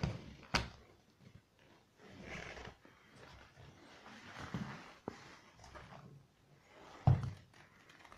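Small containers being shifted and set down on a laminate floor: a sharp click about half a second in, another around five seconds, and a heavier thump near the end, with soft shuffling between them.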